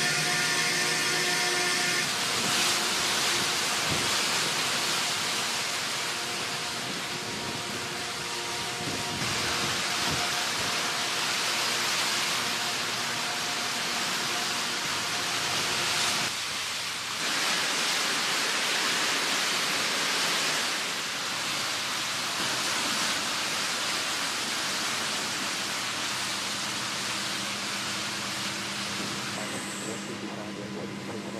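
Steady loud rushing, hissing noise of shipboard machinery around a towed-sonar handling winch, with a brief dip about 17 seconds in.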